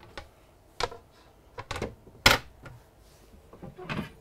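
Solid-surface cutting-board stovetop cover knocking and clacking against the countertop and cooktop as it is set in place: a handful of sharp knocks, the loudest a little past halfway.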